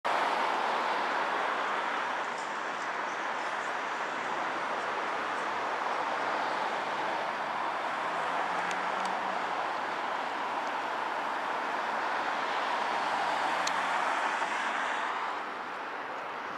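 Steady city road traffic: cars passing along a multi-lane street in a continuous hum, easing a little near the end.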